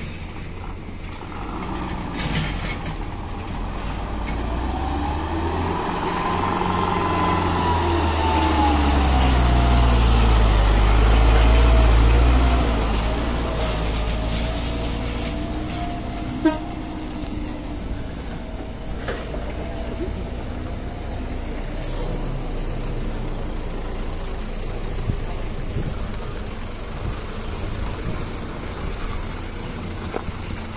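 A Mitsubishi Canter dump truck's diesel engine running hard, growing louder over the first dozen seconds and then easing off. A whine rises and falls in pitch over the top of it.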